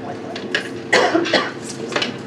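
A person coughing: a few short coughs about a second in.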